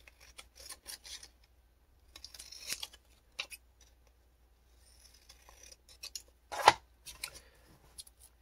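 Scissors snipping through a thin book page, a run of short cuts in several bursts with pauses between.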